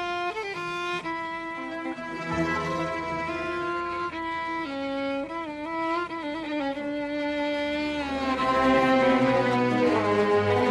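Violins of an Arabic orchestra playing a melodic instrumental passage in unison over a bass line, with a live concert recording's sound. The ensemble grows louder and fuller about eight seconds in.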